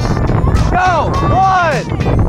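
A voice shouting the dragon boat start command "Paddles up! Go!" and beginning the stroke count "one, two", each call drawn out, over a steady low rumble.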